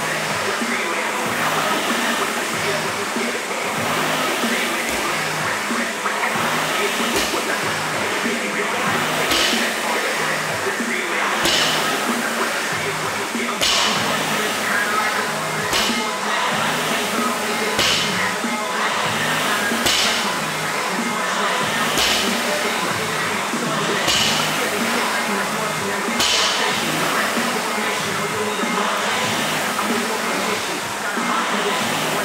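Barbell with bumper plates set down on a rubber gym floor about every two seconds during deadlift reps, each a short knock, over background music and room noise.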